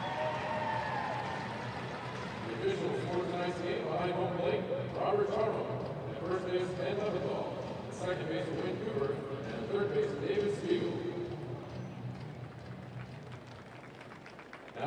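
A single voice singing over a ballpark public-address system, echoing around the stadium, with long held notes over a low, steady crowd murmur. It grows quieter near the end.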